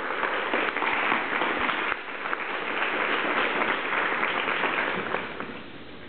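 Audience applauding, the clapping dying away about five and a half seconds in.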